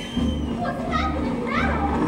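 Several short, high-pitched squeals and shrieks that slide up and down in pitch, over the low, regular pulse of the show's music.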